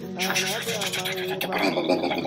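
A man's voice talking, with no sawing heard.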